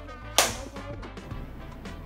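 A single sharp hand slap of a high-five about half a second in, the loudest thing here, over background music.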